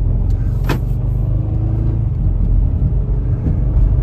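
Chrysler Town & Country minivan's V6 engine pulling under acceleration, heard from inside the cabin, with one sharp click under a second in. The driver notes a slight miss at low revs that clears above about 2,000 rpm, which he puts down to it probably needing a tune-up.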